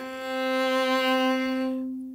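A viola bowing one steady middle C, the C on the G string stopped with the third finger, the top note of the scale's first octave. It is held for nearly two seconds and fades out near the end.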